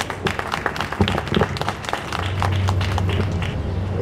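Audience applause: many hands clapping irregularly.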